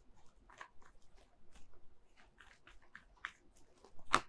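Faint, scattered clicks and light rustles of tarot cards being handled and drawn from the deck.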